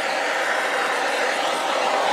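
Handheld butane torch hissing steadily as its flame is swept over wet acrylic paint to pop the bubbles in it.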